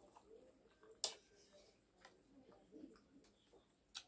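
Near silence with faint closed-mouth chewing, and one sharp click about a second in.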